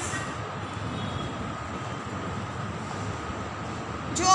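Steady background noise: an even rumble and hiss with no distinct events.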